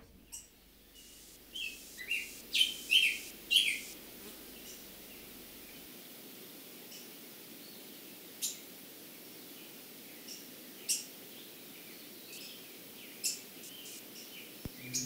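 American robins chirping: a quick run of short chirps in the first few seconds, then single sharp calls every two or three seconds.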